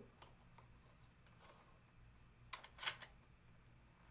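Near silence with two faint clicks, about two and a half and three seconds in, as a phone bracket is fitted onto a ring light's hot-shoe mount.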